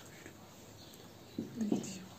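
Quiet room tone, then a short voiced sound about a second and a half in.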